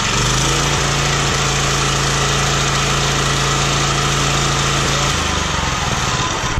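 Small propane-fuelled engine of a concrete floor edger running steadily at raised throttle, its centrifugal clutch engaged and the grinding plate spinning free with the machine tilted back. The engine note shifts just after the start and changes again near the end.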